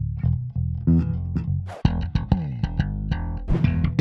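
Five-string electric bass played unaccompanied: a run of plucked notes, a few downward pitch slides about two seconds in, and brighter, more percussive notes near the end.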